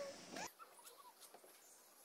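Near silence, with a few faint brief squeaks.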